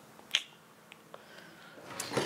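A single sharp click about a third of a second in, followed by two faint ticks, against quiet room tone.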